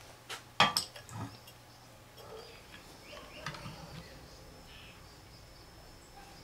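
A few sharp clinks and knocks of glass beer bottles being handled and set down on the table, the loudest about half a second in, followed by only faint handling noise.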